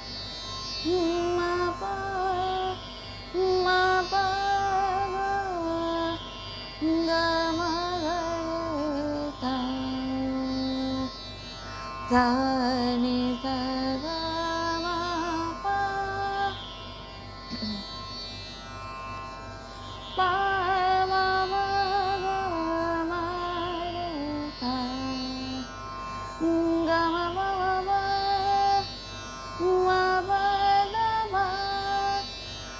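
Solo female voice singing raga Khamaj as a mixed (mishra) raga in thumri style, with held notes and ornamented glides between them. She brings in tivra madhyam and komal gandhar, notes foreign to Khamaj. A steady drone sounds behind the voice.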